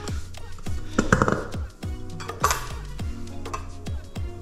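Background music with a steady beat of about two thumps a second, with light clinks of a metal knife and kitchen tools being wiped down with a cloth.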